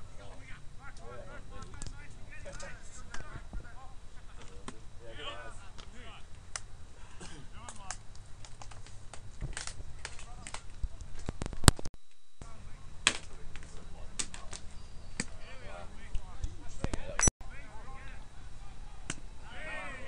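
Indistinct background voices of players and onlookers, with a few sharp clicks or knocks, the loudest about halfway through. The sound cuts out briefly twice.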